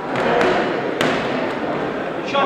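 Boxing gloves landing punches: a few sharp smacks, the sharpest about a second in, over steady sports-hall background noise.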